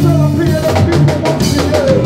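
Live gospel worship band playing: a drum kit with a quick run of hits in the middle, steady bass notes, and singers' voices over them.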